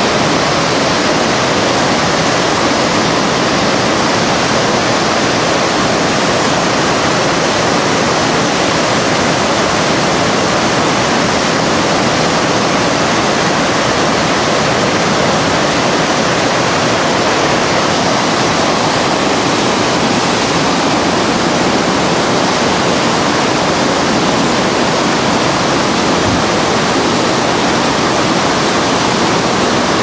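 Whitewater rapids rushing loudly and steadily over a boulder-strewn ledge, an unbroken wash of water noise.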